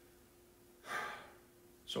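A man draws one short, audible breath about a second in, over a faint steady hum, then starts to speak.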